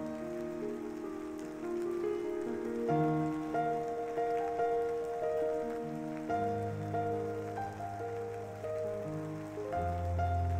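Rain sound effect of steady rain falling on a surface, mixed with soft background music of held notes; a low bass note comes in about six seconds in.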